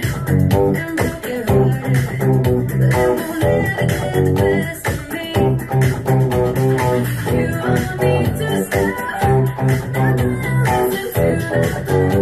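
Electric guitar, a Godin TC through an MXR Fat Sugar overdrive pedal, playing a pop-rock guitar part along with a full band mix that has bass and drums in a steady beat.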